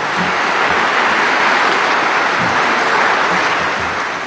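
Large audience applauding steadily in welcome, easing off slightly near the end.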